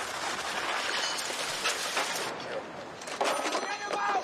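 Movie soundtrack of a crashed race car on fire: a steady, dense crackling and clattering of the burning wreck, with voices shouting near the end.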